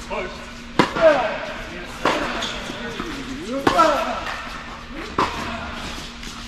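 Tennis ball struck by racquets during a rally, starting with a serve: four sharp hits about a second and a half apart.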